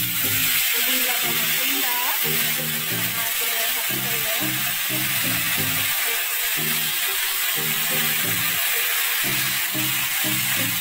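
Green vegetables frying in hot oil in a wok, a loud steady sizzle that gets louder right at the start, heard under background music with a steady beat.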